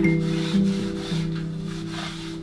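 Background music with held low notes that change about every half second, with a light rubbing noise over it.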